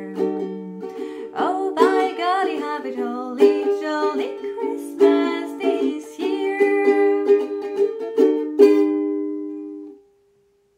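Ukulele strumming chords with a woman singing along, closing on a final strummed chord about three quarters of the way in that is left to ring and fade before the sound cuts off.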